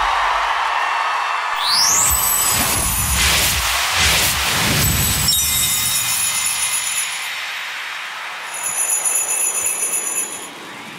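Arena crowd noise gives way to loud whooshing transition sweeps about three to five seconds in. Then comes a short music sting with sleigh bells jingling, shaken hardest near the end.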